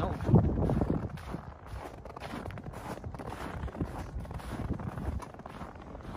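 Footsteps through deep snow, coming in short, uneven strokes, over a low rumble of wind on the microphone.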